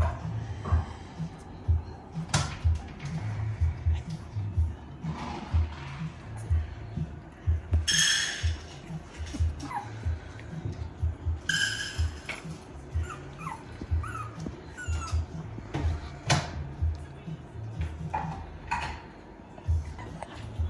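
Biewer Yorkshire Terrier puppies yipping and whimpering: two sharp, high-pitched yelps about eight and eleven seconds in, then short squeaky whines. Background music with a steady beat runs underneath.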